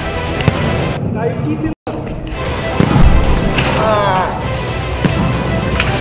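Background music with a heavy thud of a football being struck about three seconds in, and a brief dropout in the sound just before two seconds. A voice is heard shortly after the thud.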